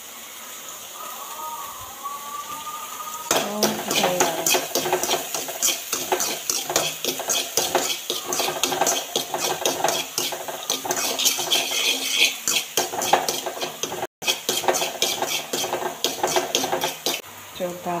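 A spoon stirring and scraping chopped onions and green chillies in a metal kadai, a dense run of rapid clicks and scrapes over the frying sizzle. The stirring starts about three seconds in after a quieter stretch of sizzling, and the sound cuts out for an instant near the end.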